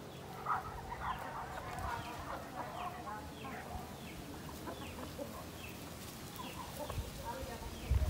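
A flock of free-range chickens clucking softly, with short, high, falling calls repeating every second or so.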